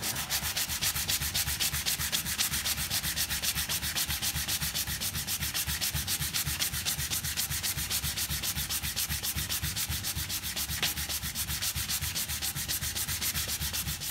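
Hand sanding: a cork sanding block wrapped in coarse 80-grit glass paper rubbed back and forth along the grain of a wooden block held in a vise, in fast, even strokes. It is the first coarse pass to take off the remaining marks on the face before the finer 240 grit. The strokes stop near the end.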